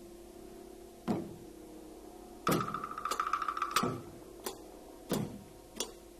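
Chinese percussion ensemble playing sparse single strokes on drum and gong, spaced about a second apart, over the lingering low ring of a large gong. About two and a half seconds in, a rapid roll with a higher ringing tone lasts just over a second and ends on a stroke.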